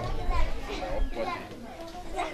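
Background chatter of guests with children's voices, fainter than the main speaker's voice on either side.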